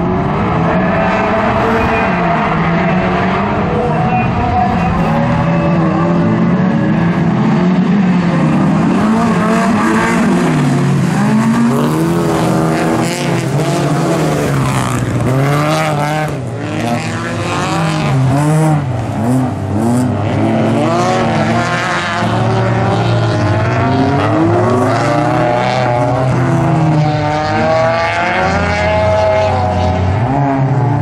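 Several bilcross race car engines revving hard together as a pack leaves the start grid and races round the track, their notes climbing and dropping over one another through gear changes. Tyres skid and scrabble on the loose surface in the corners.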